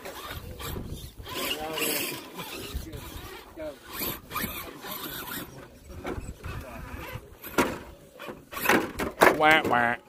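Background chatter of a small group, with a loud voice about nine seconds in, over the light clicks and whirring of radio-controlled rock crawlers climbing rock.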